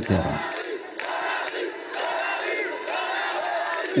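A crowd of demonstrators chanting and shouting, many voices at once.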